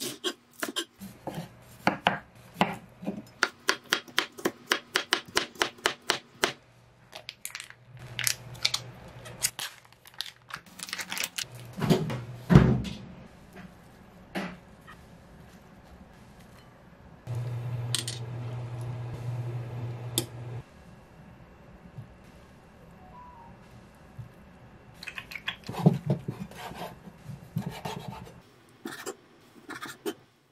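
Kitchen knife chopping lettuce on a wooden cutting board, in quick, even strokes about three a second for the first six seconds. Then come scattered knocks and one heavier thump about halfway, a low steady hum for about three seconds, and a further run of knife strokes on the board near the end.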